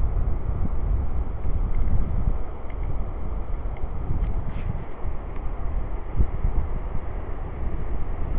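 Wind blowing across the microphone: a low rushing noise that rises and falls in gusts.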